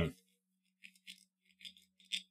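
A few faint, separate clicks and light clinks of small kitchen items being handled at a counter, over a faint steady hum.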